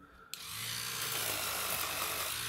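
Electric toothbrush switching on about a third of a second in and running steadily, its rotating head scrubbing inside a minidisc player's battery compartment to clean out corrosion left by leaked batteries.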